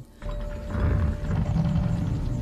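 Low mechanical rumbling and grinding of the maze's huge stone doors sliding open, under film score music.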